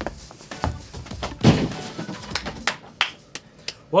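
A small pumpkin is bowled along the floor with thuds and a rolling rumble, then hits a set of bowling pins, which go down in a quick series of sharp knocks.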